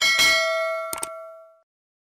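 A bright bell-like chime sound effect: two quick strikes at the start ringing out in several clear tones that fade away by about a second and a half, with two short clicks about a second in.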